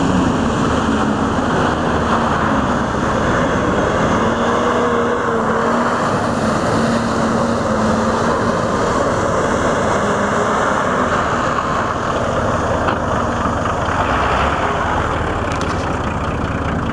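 Off-road 4x4 SUV driving through a flooded, muddy field: its engine runs steadily under load over a continuous wash of water and mud being churned and thrown up by the tyres.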